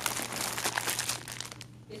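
Plastic wrapping on packs of braiding hair crinkling as they are handled, a run of irregular crackles that dies away near the end.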